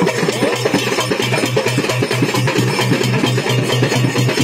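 Loud live band music with fast, dense percussion over a steady low drone.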